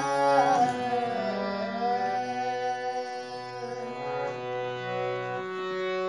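Hand-pumped harmonium playing a short melodic passage of long held notes, several reeds sounding together and the notes changing every second or so.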